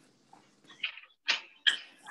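A dog giving three short, sharp yips in quick succession, heard through a video-call connection.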